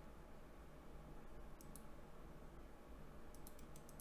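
Faint clicks at a computer: two clicks about a second and a half in, then a quick run of several near the end, over a low room hum.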